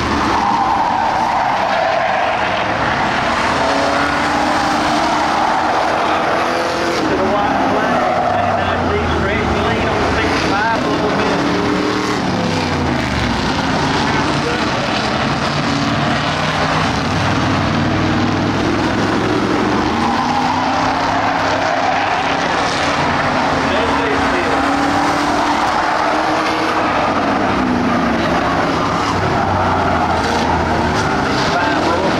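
Several Ford Crown Victoria stock cars racing on a dirt oval, their V8 engines revving together. The engine pitches rise and fall as the cars power down the straights, lift for the turns and pass by.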